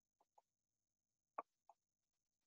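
Near silence, broken by a few faint, very short clicks, the clearest about one and a half seconds in.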